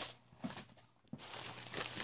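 Faint handling of a paper envelope and packaging being opened: a few soft clicks, then low rustling in the second half.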